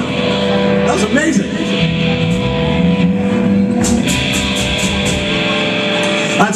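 Live rock band playing: electric guitar chords ringing over bass and drums, with a voice on top in the first second or so. Through the second half there are quick, evenly spaced drum or cymbal hits.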